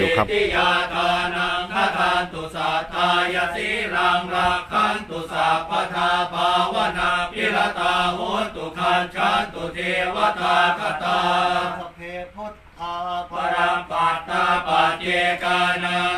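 Thai Buddhist monks chanting Pali verses together in a steady, rhythmic monotone, with a brief pause about twelve seconds in.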